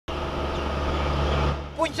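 Engine of a small truck running at a steady speed as it approaches, growing slightly louder, then dropping away about one and a half seconds in as a man's voice begins.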